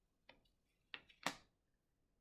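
Three faint, short taps within about a second, the last the sharpest and loudest.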